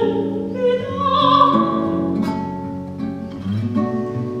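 A soprano singing long, wavering held notes over a classical guitar's plucked accompaniment.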